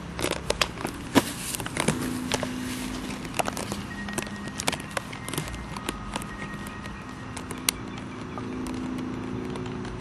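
Clear plastic water dish clicking, tapping and knocking irregularly as a West Highland white terrier bites its rim and drags and paws it over grass.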